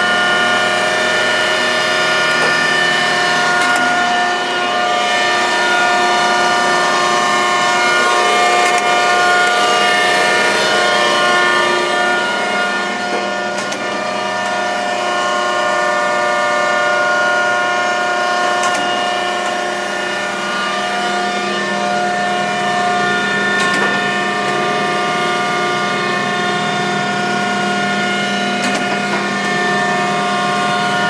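Mattison surface grinder running under power: a steady hum and whine of many held tones from its electric motors and hydraulic power unit. A light knock comes about every five seconds in the second half.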